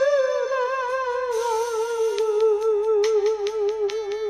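A high voice holding one long note with a steady vibrato, sliding slowly down in pitch, over a karaoke backing track with light percussion ticks.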